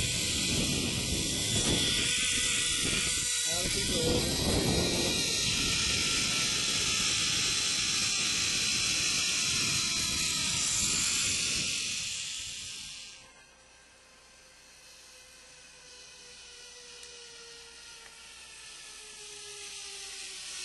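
Zip-line trolley running along the steel cable with wind rushing over the microphone, and a whine that glides slowly down in pitch as the ride goes on. The rush cuts off suddenly about two-thirds of the way in, leaving only a faint falling whine from the cable.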